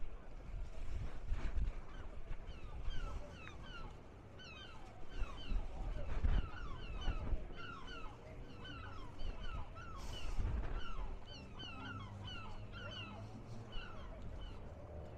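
Many birds calling at once in a busy chorus of short, downward-sliding calls that starts a few seconds in and keeps going, over a low outdoor rumble.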